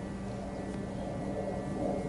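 A steady low hum with a constant drone, no other event standing out.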